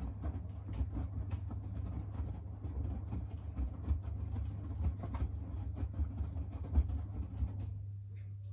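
Miele W4449 front-loading washing machine drum turning in the wash, wet laundry tumbling and water sloshing with irregular soft thumps over a steady motor hum. The tumbling stops and the drum comes to rest near the end.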